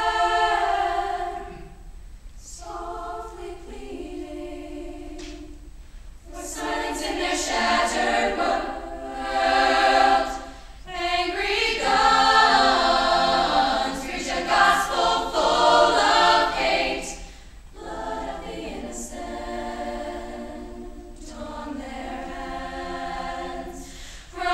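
Girls' choir singing in harmony, in phrases broken by short pauses, softer at first, swelling louder through the middle, then falling back softer near the end.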